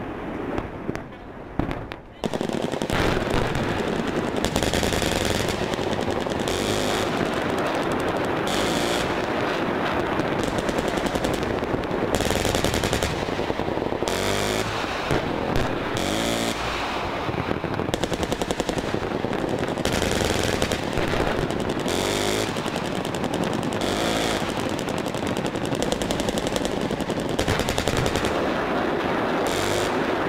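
Sustained rapid gunfire mixed with rounds exploding on target. It is dense and continuous after a short lull near the start.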